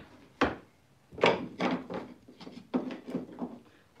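Several sharp, irregular knocks with light rubbing in between, as small wooden boards and tools are set down and handled on a wooden work table; the loudest knock comes about a second in.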